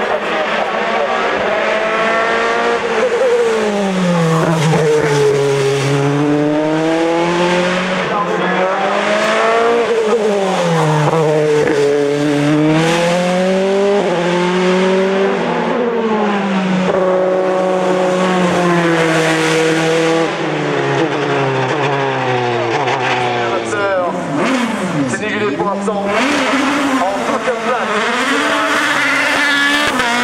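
Single-seater race car engines at high revs: a Dallara F308 Formula 3 car with its Mercedes four-cylinder engine climbs through the gears, its pitch rising and falling again and again with each shift and braking. Near the end another open-wheel race car, a Tatuus Formula Master, pulls away, its pitch climbing.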